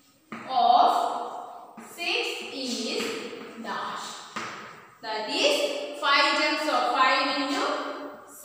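A woman talking, in phrases with short pauses between them.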